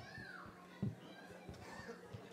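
Faint voices of people talking in a large hall, one of them child-like, with a short knock just before the one-second mark over a low steady hum.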